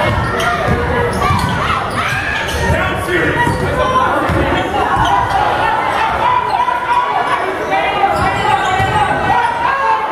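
Basketball dribbled on a hardwood gym floor during play, with the voices of players and spectators calling out throughout, echoing in the large gym.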